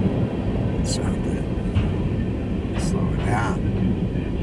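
Freight train of covered hopper cars rolling past close by, a steady rumble of wheels on the rails. A person's voice is heard briefly a little after three seconds in.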